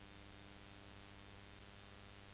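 Near silence: a faint steady hum with hiss, with no other sound.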